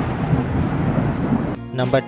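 A sound-effect wash of noise, heaviest in the bass, fades steadily from loud for about a second and a half as the number-reveal animation plays. Near the end a narrator's voice says "number" over light guitar music.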